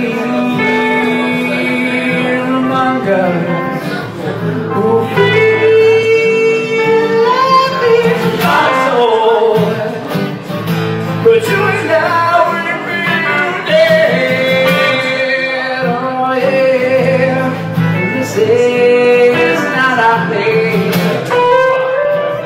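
Live music from a strummed acoustic guitar and an electric guitar playing an instrumental passage of a rock song, with a lead line that slides and bends in pitch.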